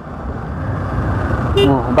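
Motorcycle riding noise, a steady rumble of engine and road rush that builds over the first second and a half. A voice starts near the end.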